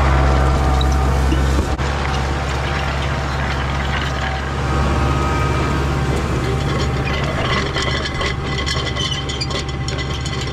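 Tractor engine running steadily under load while pulling tillage implements through dry field soil. The sound shifts abruptly about two seconds in, and clattering from the implement grows in the second half.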